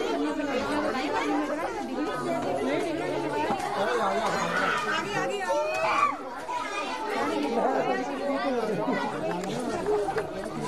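Many people talking at once: a steady chatter of overlapping voices, with no one voice standing out.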